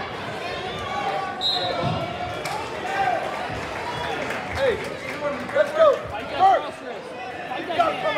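Voices of coaches and spectators calling out in a gym during a wrestling bout, a few louder shouts about five to six seconds in, with scattered thumps.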